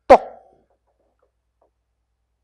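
A man's single short, loud exclaimed word spoken into a handheld microphone, sharp at the start and falling in pitch.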